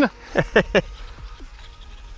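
A man laughing briefly, three short bursts about half a second in, followed by faint background music over low wind rumble on the microphone.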